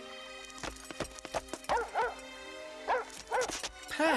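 Cartoon dog yipping: short, quick yips in pairs, about two seconds in and again near the end, over soft background music, with a few sharp clicks in the first second and a half.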